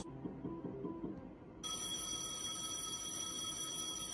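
Merkur Fruitinator Plus slot machine sounding an electronic ringing, like a telephone bell, that starts about one and a half seconds in and holds steady for nearly three seconds as a line of five bells lands for a win. Faint machine music plays before it.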